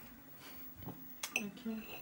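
A table knife clicking and clinking against a plate as food is cut on it: a few light taps, with one ringing clink just past the middle.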